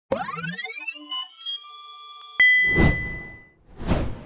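Synthesized logo intro sting: a rising pitched sweep that levels off, then a sudden hit at about two and a half seconds, the loudest moment, leaving a ringing tone, followed by two whooshes.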